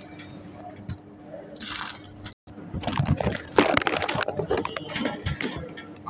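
Rustling and crackling handling noise from a handheld phone moving against the panel, thickest in the second half, over a steady electrical hum, with a brief dropout about two and a half seconds in.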